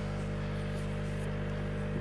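A steady low electrical hum made of several held tones, from aquarium equipment running on the tank.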